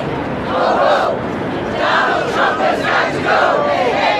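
Crowd of protesters chanting and shouting together in rhythmic groups of voices.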